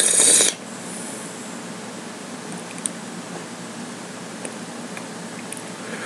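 A person's loud, rushing breath at the very start, ending about half a second in, then a steady low hiss with a couple of faint clicks.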